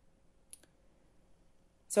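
Near silence with a faint steady hum and a single short click about half a second in.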